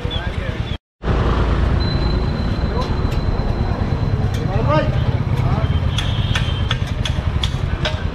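Busy street noise: a steady low traffic rumble under scattered background voices and occasional sharp clicks. The sound cuts out completely for a moment just under a second in.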